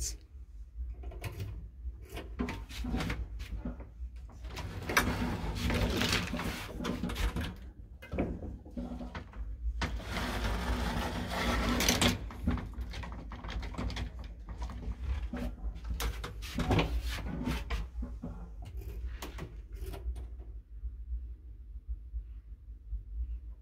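An old lift's wooden doors and folding metal lattice gate being worked by hand: scattered clicks and knocks, with two longer stretches of sliding, rattling metal about five and ten seconds in, over a steady low hum.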